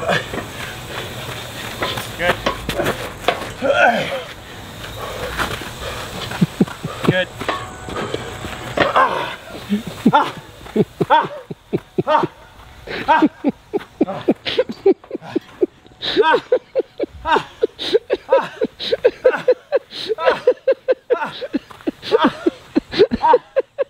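A man grunting and gasping hard with every breath while pushing a loaded Prowler push sled flat out. From about ten seconds in the grunts come in a steady, quickening rhythm of about two to three a second. The sound is of a man near the end of his strength in an all-out sled sprint.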